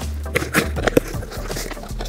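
Rummaging in a cardboard shipping box: a scatter of short knocks and crinkles as cardboard and packaging are handled.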